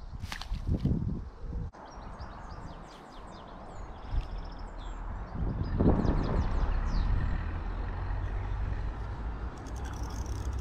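A small songbird singing a quick run of high chirps and trills through the middle, over a steady low outdoor rumble that swells about six seconds in. A quick flurry of faint clicks comes near the end.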